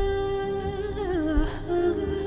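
A music track in which a woman's voice holds a long wordless note. About a second in the note wavers and slides down, then settles on a lower held note, over low soft beats.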